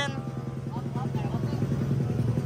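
A small motorcycle engine idling steadily, with an even, rapid pulse.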